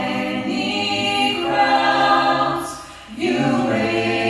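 Mixed a cappella vocal group of seven men and women singing in close harmony, amplified through handheld microphones, with no instruments. The chord is held, then there is a short break about three seconds in before the voices come back in together.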